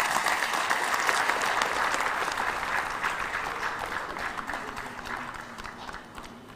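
Audience applauding, many hands clapping together, the applause gradually dying down toward the end.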